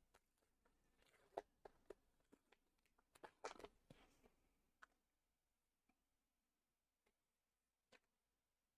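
Faint crinkling and tearing of a trading-card pack's wrapper being ripped open by hand, a few soft crackles in the first five seconds, then near silence.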